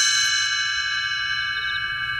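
A single struck chime, ringing on with several steady tones and slowly fading.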